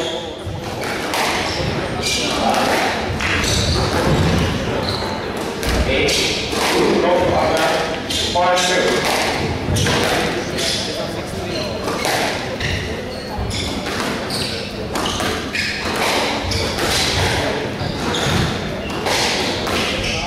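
Squash rally: the hard rubber ball struck by rackets and smacking off the court walls, a sharp impact about once a second, with voices in the background.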